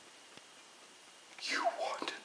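Quiet room for about the first second and a half, then a man whispering breathily close to the microphone.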